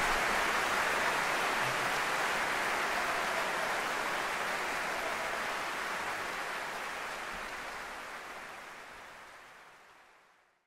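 A steady, even rushing noise, like a broad hiss, that gradually fades out over the last few seconds.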